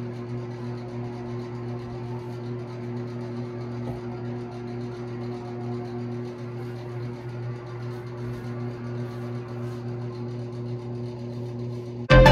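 A small electric appliance humming steadily with a low, even buzz.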